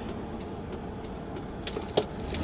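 Steady road and engine noise heard inside the cabin of a moving car, with a light click or two near the end.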